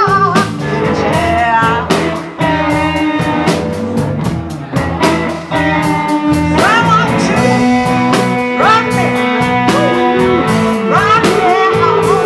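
Live blues-rock band playing: electric guitars, bass guitar and drums under a woman's sung lead vocal, with harmonica.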